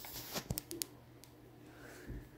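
Faint rustling of hair and fabric-covered foam pillow rollers being unwound by hand, with a few small clicks in the first second.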